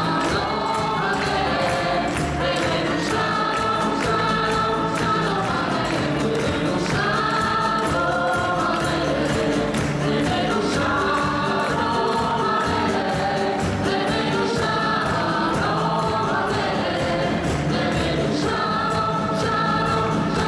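A choir singing with a live band, over a steady, quick drum beat.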